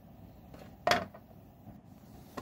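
One sharp plastic click a little under a second in as the motor capacitor is pressed into its seat in a Moulinex Moulinette's plastic base housing, followed by a couple of faint taps.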